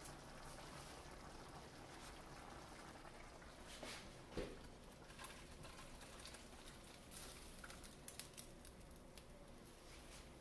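Faint sound of thick gravy with vegetables being poured from a cast-iron skillet into a slow cooker, with a few soft knocks, one about halfway through and a small cluster near the end.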